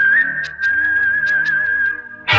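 Whistled melody in a film song, holding one high note with a slight lift near the start, over light percussion ticks about four a second and soft backing chords.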